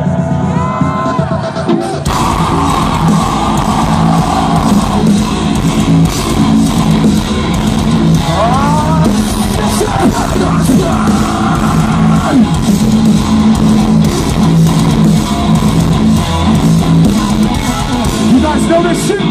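A live metalcore band playing loud through a festival PA, recorded on a phone: after a thin intro, the full band with heavy guitars, bass and drums kicks in about two seconds in and drives on steadily.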